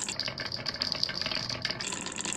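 Many glass marbles rolling down a wavy channel carved into a wooden board: a steady rolling rattle of glass on wood, full of small clicks as the marbles knock against each other.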